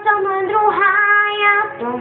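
A young girl singing one long held note that bends in pitch, breaking off shortly before the next phrase begins.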